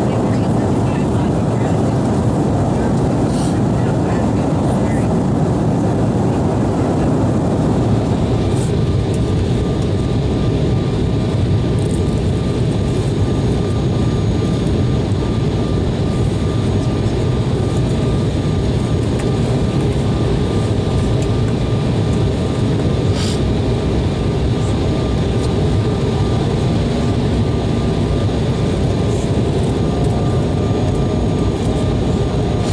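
Steady cabin roar of an Embraer 190 airliner in flight, the noise of its twin GE CF34 turbofans and the airflow past the fuselage. About eight seconds in, a faint, high, steady whine joins the roar.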